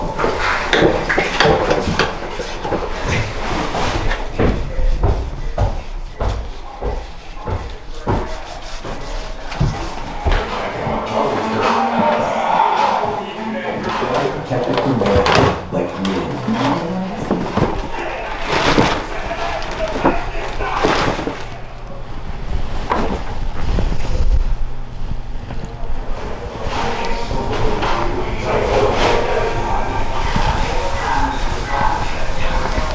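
Knocks and clatter of trash and debris being handled, bagged and swept, with background music and indistinct voices.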